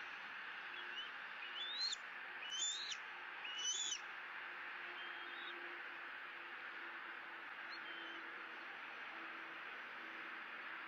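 Bald eagle giving three high, rising piping calls about a second apart, then a few fainter short calls, over a steady hiss.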